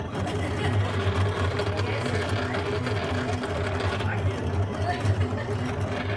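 Silhouette electronic cutting machine cutting around printed sticker outlines on a PixScan mat: its motors run with a steady low hum as the blade carriage and rollers move the mat.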